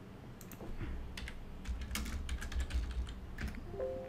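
Typing on a computer keyboard: a quick, fairly faint run of key clicks as a short name is typed in.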